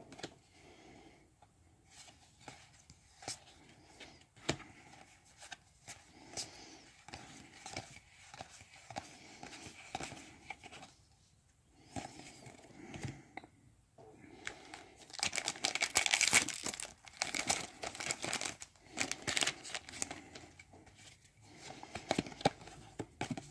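Magic: The Gathering trading cards being handled and flipped, with scattered soft clicks and slides of card against card. About fifteen seconds in comes a louder stretch of crinkling lasting about five seconds.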